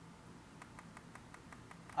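Faint rapid strokes of a marker on a whiteboard, about seven or eight a second, as a narrow strip is shaded in with quick hatching; they start about half a second in.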